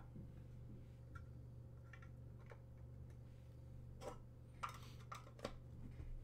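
Near silence over a steady low hum, broken by a few faint, short clicks and taps of trading cards and packs being handled on a table, slightly more of them about four seconds in.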